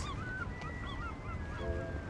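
Wind buffeting the microphone as a steady low rumble. Faint short high chirps and gliding tones sit over it, with a brief lower honk-like note near the end.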